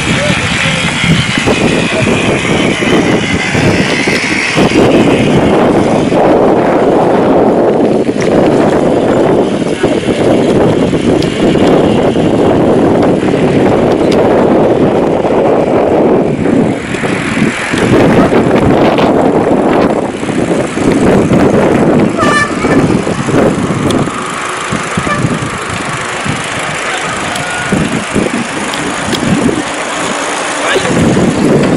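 Loud, uneven rushing noise of wind buffeting the microphone as it moves along the road, with indistinct voices mixed in.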